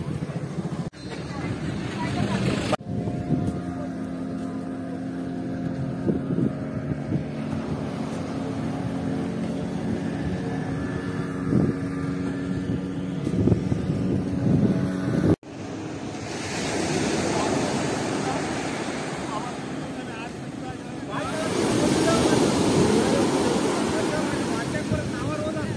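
A steady engine hum with a few knocks, which cuts off abruptly about halfway through. It is followed by sea surf breaking and washing up the sand, swelling twice.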